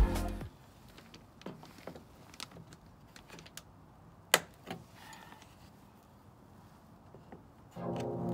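Plastic grille clips on a VW T6 Transporter's front bumper clicking into place as they are squeezed in with a pair of grips: a few scattered sharp clicks, the loudest about four seconds in. Background music fades out at the start and comes back near the end.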